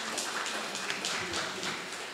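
An audience applauding, a dense patter of many hands clapping, mixed with a little laughter.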